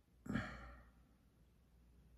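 A man's single sigh: one short breathy exhale shortly after the start, fading within about half a second.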